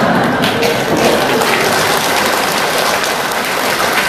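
A congregation laughing and clapping together in response to a joke, a dense patter of many hands with laughter mixed in.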